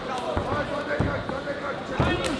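Dull thuds of kickboxing strikes landing, two of them about half a second apart, over shouting voices.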